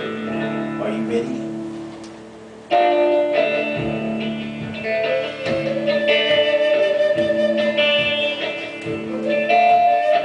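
Native American flute playing a melody of long held notes over guitar accompaniment, with no singing. After a brief dip, the flute comes back in loudly about three seconds in.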